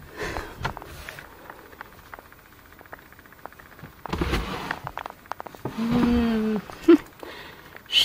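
Rummaging through a bookcase: light rustling and clicks of books and papers being moved, with a louder bump about four seconds in. A short, steady low hum follows around six seconds in.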